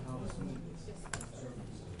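A single computer mouse click, a quick double tick of button press and release, a little past the middle, over a steady low hum.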